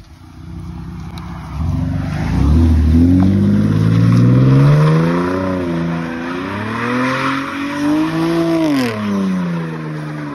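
Chevrolet Camaro's engine revving hard while it spins its rear tyres in a donut, the tyres squealing. The revs climb from about a second and a half in, rise and dip through the spin, peak near the end and then drop away.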